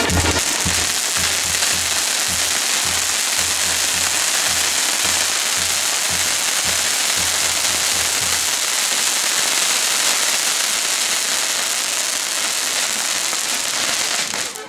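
Castillo firework tower burning, its many spark fountains and whirling rockets giving a dense, steady hissing rush.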